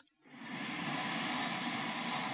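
A woman slowly drawing a long, deep breath in through the nose: a steady airy hiss that begins about a quarter second in.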